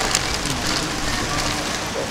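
Steady rushing of shallow river water spilling over a low step in a concrete channel.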